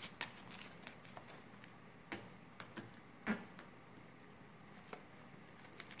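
Faint scraping and light clicks of a table knife spreading butter on an English muffin on a paper plate, a few scattered strokes with the sharpest about three seconds in.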